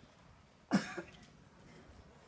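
A single cough, sudden and short, about two thirds of a second in, standing out against a quiet room.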